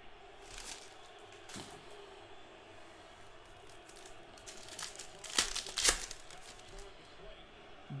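Foil trading-card pack wrapper being torn open and crinkled by hand: a few faint crackles at first, then a run of louder crinkling and tearing about five to six seconds in.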